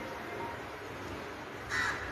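A crow caws once near the end, over a steady background hiss.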